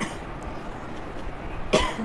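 A woman's single short cough, or throat-clear, about three-quarters of the way through, after a stretch of low room noise.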